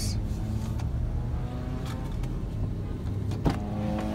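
Car engine idling while a power window motor runs steadily, lowering the driver's window, ending in a sharp click about three and a half seconds in.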